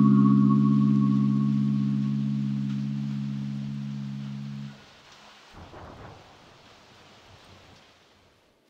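Background music ending on a held chord that slowly fades, then cuts off abruptly a little past halfway, leaving only a faint hiss.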